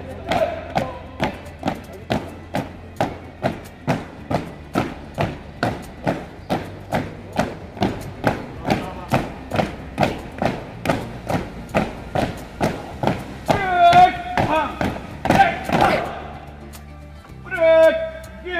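Boots of a marching drill squad striking paving in step, a sharp even stamp about two to three times a second. Near the end two long shouted drill words of command ring out, and the stamping stops as the squad halts.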